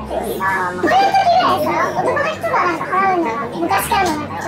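Speech only: a person talking in Japanese, with no other sound standing out.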